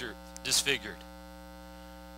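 Steady electrical mains hum, a low buzz with many evenly spaced overtones, running under a pause in a man's speech, with a brief vocal sound about half a second in.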